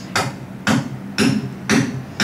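Hammer blows struck at a steady pace, about two a second, four in all, each with a brief ringing tail.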